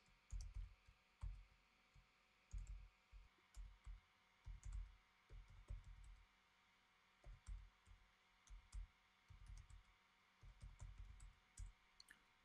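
Faint computer keyboard typing: irregular single keystroke taps with short pauses between them.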